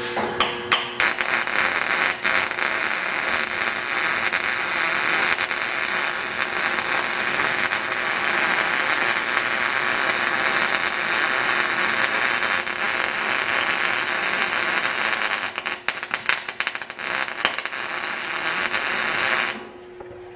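MIG welding arc from a Millermatic 250 laying a bead on steel pipe coupon, a steady crackling sizzle. Near the end it stutters and breaks up for a couple of seconds before cutting off abruptly. The welder found the arc was kicking on him.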